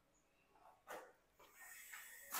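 Near silence, with one faint short sound about a second in.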